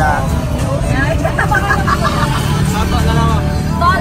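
Low, steady rumble of a vehicle heard from inside its open passenger cabin, with people talking over it.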